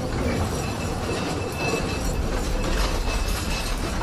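Low mechanical rumble with metallic clatter and a few brief, faint high squeals: a machinery sound-effect passage inside the album rather than played music.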